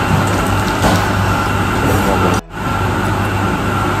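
Steady café background noise with a constant low hum, broken by a brief sudden dropout about two and a half seconds in.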